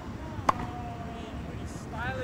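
A tennis ball struck once by a racket, a single sharp pop about half a second in, over a steady low background hum. A thin steady tone lingers for about a second after the hit.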